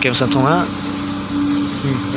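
A heavy truck's engine running steadily, one low, unchanging hum, heard under a voice during the first half-second.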